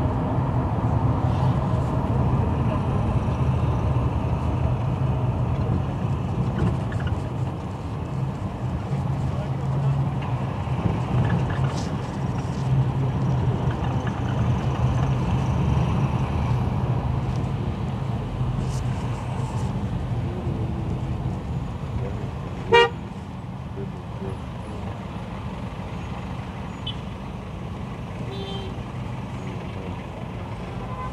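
City traffic heard from inside a car: a steady low engine and road rumble, with horn toots from the surrounding traffic. One short, loud, sharp sound comes about three-quarters of the way through.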